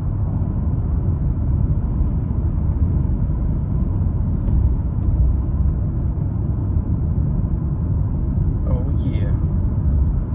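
Steady low road rumble of a car driving, tyre and engine noise heard from inside the cabin.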